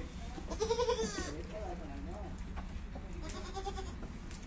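Goat bleating: a loud, wavering call about half a second in, followed by two softer calls.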